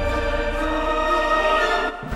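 Soundtrack music of held, sustained choral chords with no beat, cutting off abruptly at the end.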